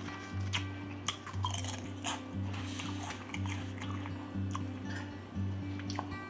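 Background music with a repeating low bass line, over a person chewing a mouthful of Italian beef sandwich with scattered short mouth clicks.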